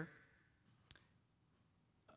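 Near silence: room tone, with one brief sharp click just under a second in.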